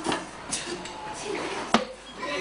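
A few sharp knocks or taps, the loudest one near the end, over low classroom background noise.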